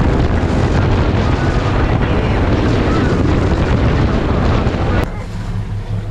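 Bay boat running fast across open sea: a heavy rush of wind on the microphone over engine and hull-on-water noise. It cuts off suddenly about five seconds in, leaving a quieter wash of wind and water.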